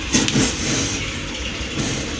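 Water running and splashing steadily in a fish pond, with a brief louder splash just after the start.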